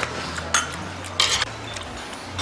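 Stainless steel spoon and chopsticks clinking against stainless steel bowls: a sharp clink about half a second in, then a longer scraping clatter a little after one second.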